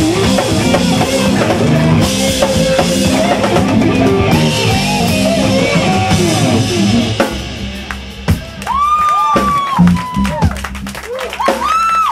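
Live jazz-fusion band playing: a distorted electric guitar solo from a Robin Savoy Pro through a Bogner Uberschall amp with echo and reverb, over bass guitar and drum kit. After about seven seconds the dense playing thins out to long held, bending lead notes and scattered drum hits, as the tune winds down to its ending.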